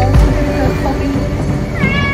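Background music with a beat, and a cat meowing once near the end.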